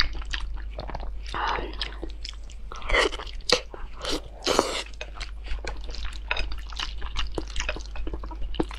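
Close-miked eating: wet chewing and mouth clicks, with a few louder bites into glazed grilled eel about halfway through.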